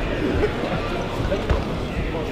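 Murmur of voices in an arena, with a couple of dull low thuds, about half a second and a second and a half in.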